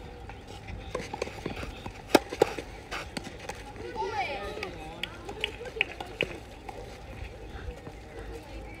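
Sharp knocks of a tennis ball on a clay court, racket strikes and bounces: two loud ones about a third of a second apart a couple of seconds in, then a few fainter ones past the middle, over distant voices.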